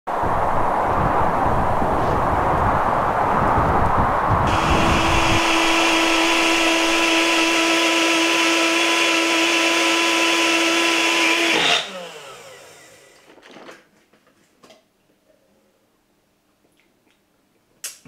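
Personal single-serve blender running with a protein shake in its cup: rough and churning for the first few seconds, then a steady high whine, until the motor cuts off about twelve seconds in and winds down.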